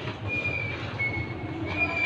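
Short, thin, high-pitched squeaks, about one a second and each a fraction of a second long, over a steady low hum.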